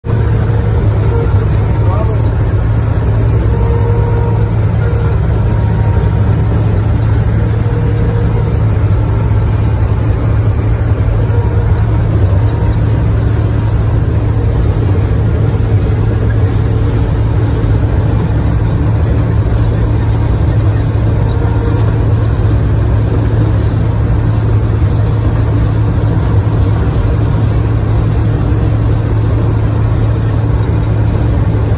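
Claas Dominator 80 combine harvester running steadily under load while harvesting corn: a continuous, even, low engine and machinery drone, heard from the cab.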